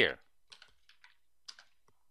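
Computer keyboard keys pressed a handful of times: faint, separate clicks a few tenths of a second apart.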